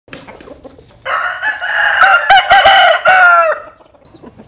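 Rooster crowing: one long, loud crow that starts about a second in and lasts about two and a half seconds, wavering in pitch and dropping away at the end. A few short, soft sounds come before it.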